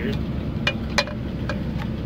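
A truck's engine running with a steady low rumble, and four sharp clicks over it, the loudest about a second in.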